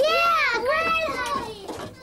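Young children's high voices, drawn out and sliding up and down in pitch, without clear words, trailing off near the end.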